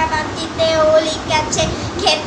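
A young girl's voice reciting a Bengali rhyme in a sing-song chant, some syllables held as drawn-out notes.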